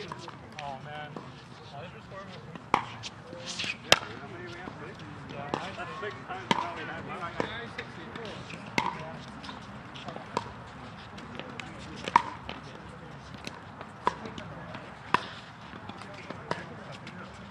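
Pickleball paddles striking plastic balls: about a dozen sharp pops, irregularly spaced, from rallies on nearby courts, the loudest about four seconds in. Faint, indistinct voices can be heard beneath them.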